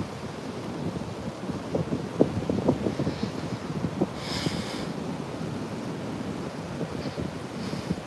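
Steady wind rumbling on a phone's microphone in the open air, with a few soft crunches of footsteps on sand about two seconds in and a brief hiss about halfway through.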